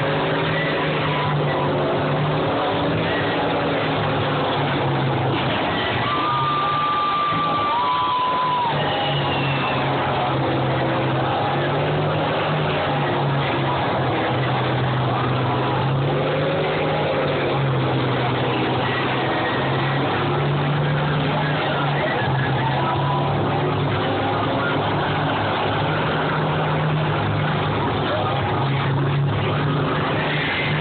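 Diesel engines of combines running and revving in the arena, their pitch rising and falling as the machines manoeuvre. Two brief high-pitched tones sound about six to eight seconds in.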